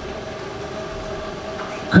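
Steady background hum with a couple of faint steady tones in a pause between a man's spoken phrases; his voice comes back in right at the end.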